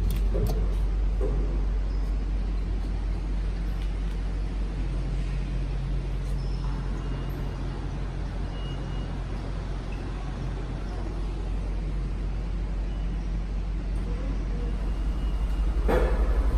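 Steady low rumble of the background noise in a large, hard-surfaced station concourse, with a faint steady hum through the middle.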